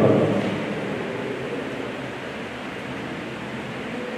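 Steady room noise: an even hiss with no clear events, during a pause between speakers; a voice trails off at the very start.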